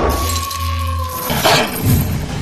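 Intro sting of sound effects and music: a held high tone over a low rumble that cuts off a little past a second in, then two sharp hits with a glassy, clinking shimmer.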